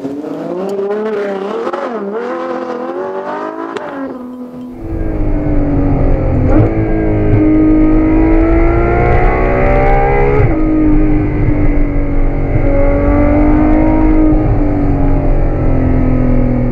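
Ferrari V12 engine. First its revs rise and fall at a moderate level. Then, heard from inside the cabin and louder, it pulls hard with the pitch climbing, drops sharply at an upshift about ten seconds in, and climbs again.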